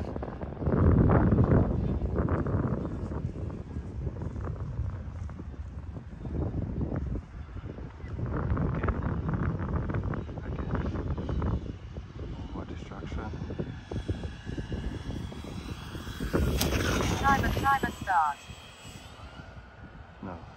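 Gusts of wind buffeting the microphone in uneven surges, with the whine of a radio-controlled model plane's electric motors. The motor whine is loudest as the plane passes close, near the end, its pitch gliding as it goes by.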